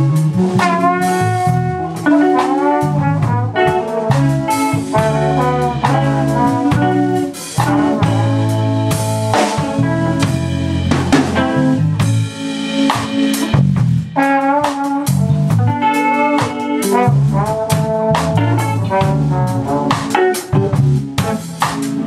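Live New Orleans funk band: trombone playing a melodic line with bends in pitch over drum kit, electric bass and electric guitar.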